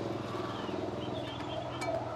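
Quiet background ambience with a steady low hum.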